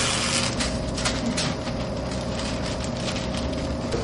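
Cardboard rustling and scraping as a taped cardboard cover is peeled back and handled, most of it in the first second and a half, over a steady background hum and low rumble.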